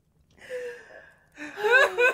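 A woman's breathy gasp while laughing, then a louder voiced laugh with a sharply bending pitch near the end.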